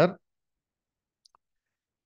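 Near silence after a man's word trails off, broken by two faint, very short clicks a little over a second in.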